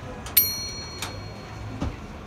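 A metal object is struck once with a sharp clink and rings brightly for about a second, then a dull knock comes near the end.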